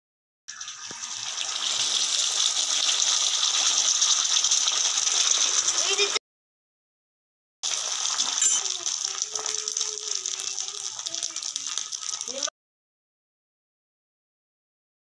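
Egg omelette sizzling on a hot flat griddle (tawa): a steady frying hiss that swells over the first second or so, breaks off abruptly about six seconds in, and starts again a second and a half later before stopping suddenly near the end.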